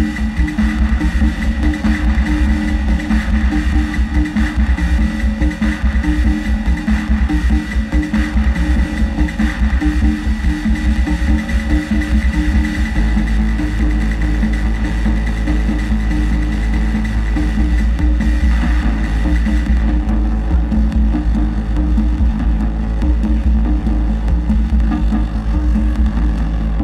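Live modular-synthesizer noise music: a heavy droning bass under pulsing mid-range tones, with a steady high tone that drops out about three-quarters of the way through.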